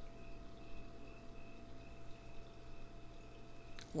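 Quiet room tone with a faint steady electrical hum and a thin constant whine, and a faint tick near the end.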